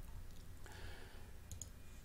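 Low room tone with a steady hum, a faint soft hiss about half a second in, and a couple of brief faint clicks about one and a half seconds in.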